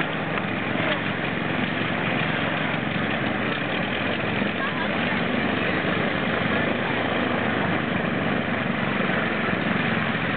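Twin engines and propellers of a 1914 Curtiss America flying boat running steadily at low power as it taxis on the water.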